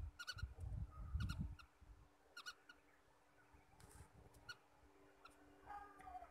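Faint bird chirps, short and mostly in pairs, about once a second, over a low steady hum, with a few low thuds in the first second and a half.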